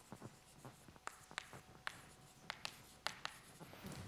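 Chalk writing on a blackboard: faint, irregular taps and short scratches as the chalk strokes out letters.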